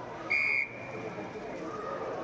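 A field umpire's whistle gives one short, sharp blast, about a third of a second long, stopping play as players pile on the ball in a tackle. Voices murmur in the background.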